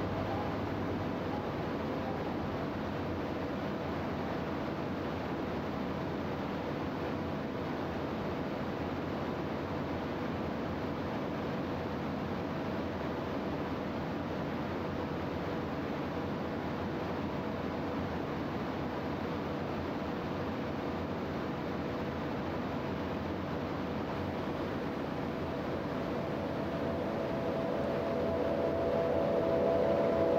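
Steady in-flight drone of a Pipistrel Virus SW light aircraft, engine and propeller with rushing airflow, unchanging in level and pitch.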